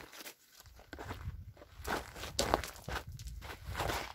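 Footsteps crunching over river gravel and rocks in an irregular walking rhythm, with a low rumble on the microphone from about half a second in.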